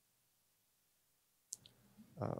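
Near silence, broken by a faint sharp click and a smaller second one about one and a half seconds in.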